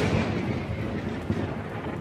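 Rumbling, thunder-like boom of a logo-card sound effect, dying away slowly.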